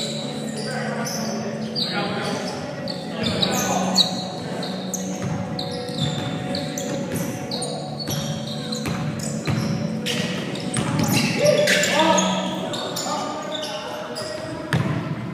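Indoor basketball game in an echoing gym: sneakers squeaking sharply and often on the hardwood floor, the ball bouncing, and players calling out, loudest about eleven to twelve seconds in.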